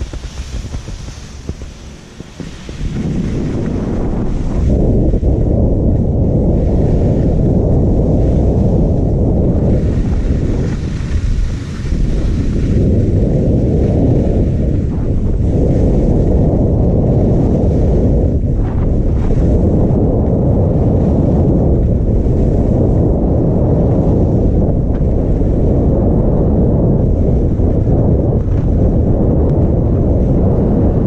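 Wind buffeting a GoPro Hero5 Black's microphone as a skier runs downhill. It is a loud, low rumble that builds about three seconds in as speed picks up toward 40 km/h, and then holds with one brief lull partway through.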